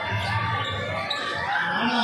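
A basketball bouncing on a hard court during live play, under the steady talk and shouts of a large crowd.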